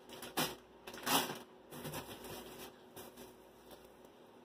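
Rustling and crinkling of bags and food packaging being handled, in a few short swishes, the loudest about a second in, dying away after about three seconds.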